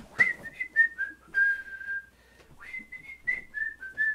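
A person whistling a short tune: two descending phrases of stepped notes, each ending on a longer held note. A few knocks of movement sound alongside, the loudest just after the start.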